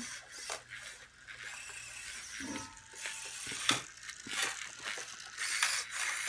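Fingertech Viper kit battlebot's electric drive motors whirring, with irregular scrapes and knocks as it shoves against another small robot on a hard floor.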